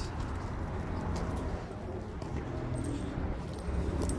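A dog walking on a leash over asphalt, its claws and collar tags giving faint scattered clicks, over a low steady outdoor hum.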